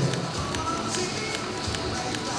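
Background music with a scatter of short, sharp taps: high heels clicking on the wooden stage floor as the competitors step and turn into a side pose.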